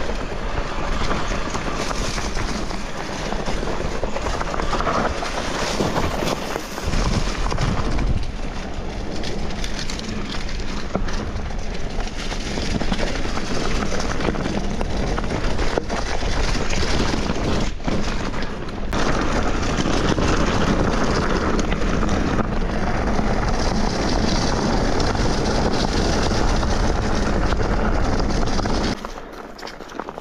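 Mountain bike riding down a rough trail: a steady rush of wind on the microphone with tyre rumble and a few sharp knocks from the bike over the ground. The noise drops away about a second before the end.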